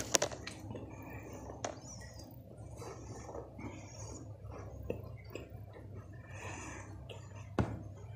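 A crunchy biscuit bitten close to the microphone: a sharp crunch at the start, then chewing with a few smaller crunches and another sharp crack near the end, over a steady low hum.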